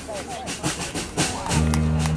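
Big band playing a swing tune, with sustained low horn notes coming in about a second and a half in, and people talking nearby.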